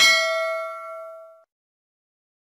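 Notification-bell ding sound effect: a single bright chime that rings and fades out about a second and a half in.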